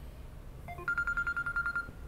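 Electronic beeping tone: a quick run of short beeps at different pitches, then a high steady beep that pulses rapidly for about a second.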